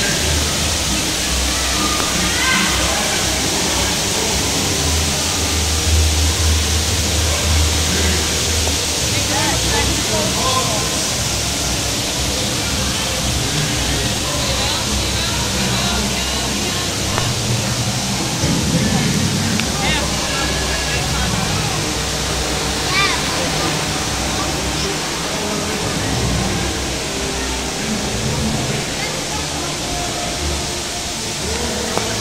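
Theme park ambience: a steady rushing noise with scattered voices and some music.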